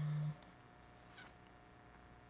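A short, steady, low hummed "mm" from a person's closed mouth at the very start, lasting about a third of a second, then quiet room tone.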